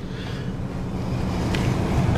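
A steady low rumble with a faint hum under it, slowly growing a little louder.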